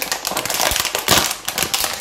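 Plastic packaging crinkling and rustling as a plastic tub and a bag of cornmeal are handled: a quick, irregular run of crackles and ticks.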